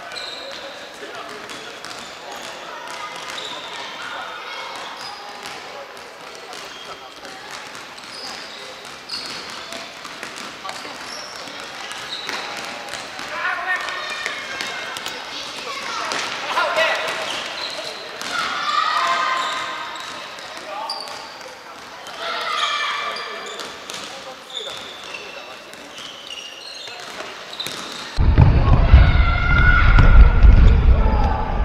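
Futsal players shouting and calling to each other in a large sports hall, over the thuds of the ball being kicked and bouncing on the wooden floor. About two seconds before the end the sound cuts abruptly to a much louder, low rumbling noise.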